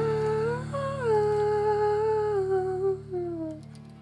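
Wordless humming holding long notes over a sustained, ringing guitar chord; the hummed line slides down and stops about three and a half seconds in, leaving the chord dying away.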